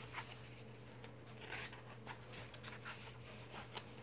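Pages of a paperback coloring book being turned and handled: a string of soft paper rustles and flicks.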